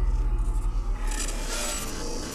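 Opening of a rock album's intro track: a steady deep rumble with short scraping strokes laid over it about a second in.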